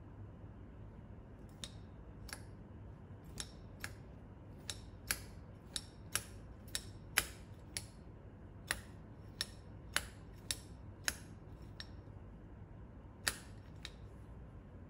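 Manual tufting gun punching yarn into the backing cloth, one stitch per squeeze: a run of sharp clicks, roughly one or two a second, beginning about one and a half seconds in.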